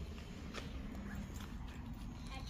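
Footsteps on brick paving, faint and irregular, over a low steady rumble of wind on the microphone.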